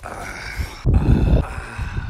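A person's drawn-out, wordless vocal sound, held in two stretches with a short break about a second in, over rumbling handling noise from the phone.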